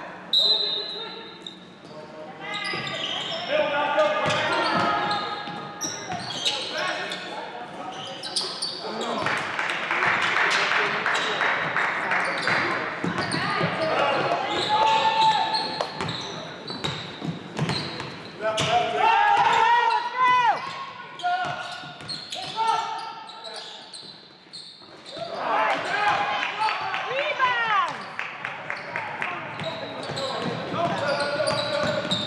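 Live basketball play in a gymnasium: a basketball bouncing on the hardwood court, sneakers squeaking, and players and spectators calling out.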